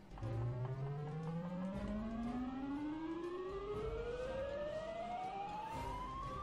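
Book of Ra slot machine's win count-up sound: one pitched tone rising steadily and smoothly in pitch as a big win is tallied into the credit meter.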